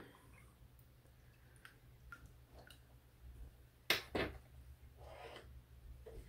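Quiet kitchen handling noises: a few faint ticks, then one sharp click about four seconds in and a smaller one just after, over a faint steady low hum.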